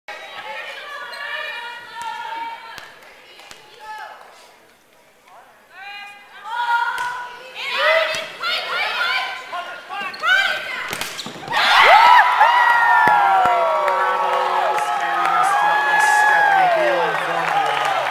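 Volleyball rally with the ball slapping hands and floor in sharp knocks, and players calling out. Past the middle, several high voices shout together, louder than before.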